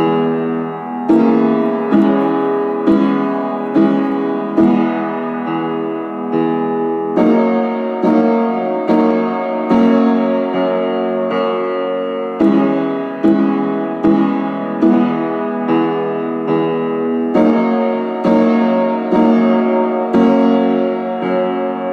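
Piano played slowly, with chords or notes struck about once a second, each left to ring and fade before the next.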